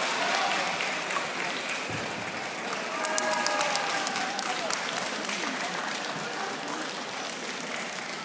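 Spectators applauding, the claps picking up about three seconds in and then fading, with crowd voices underneath.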